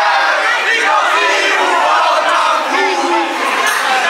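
A crowd of teenagers shouting and cheering all at once, many voices overlapping with no single voice clear.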